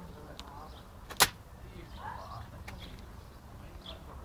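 A dog chewing a torn plastic beach ball: one sharp crack of plastic about a second in and a few fainter clicks, over a low steady rumble.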